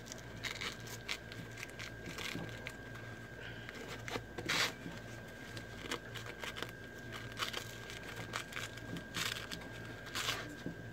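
Nylon webbing and fabric of a plate carrier cummerbund rustling and scraping in short strokes as a buckle strap is worked through the MOLLE loops by hand. The loudest scrape comes about halfway through, and another comes near the end.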